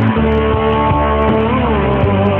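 Turkish rock music led by guitar, a chord held over bass, with one note bending up and back down about one and a half seconds in.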